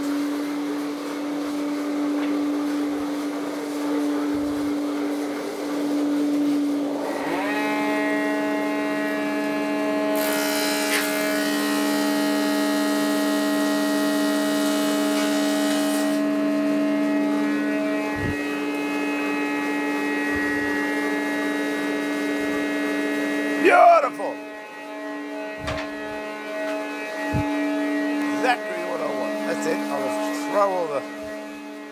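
Woodworking machine motors spinning up one after another and running with a steady hum, one at the start and a second about seven seconds in. From about ten to sixteen seconds a higher, hissy cutting noise is heard as a strip is fed through, taking it from six to five millimetres. There is a sharp, loud sound near the end.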